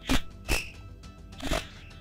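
Three short rustles close to a headset microphone as the wearer moves, over a steady low electrical hum.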